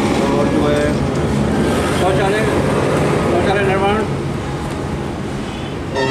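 A few short bits of indistinct speech over a steady background of passing road traffic, with a continuous low rumble.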